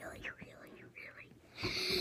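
Only speech: a boy whispering, repeating "really" over and over.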